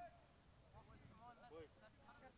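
Faint, distant voices of rugby players calling out on the pitch, several short calls across the two seconds, with a low rumble of open-air background underneath.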